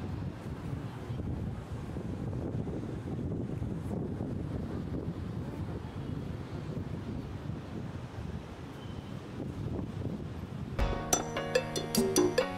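Wind rushing on the microphone over the sea surf, a steady low rumble. About a second before the end, music with a rhythmic percussive beat starts abruptly and is louder than the wind.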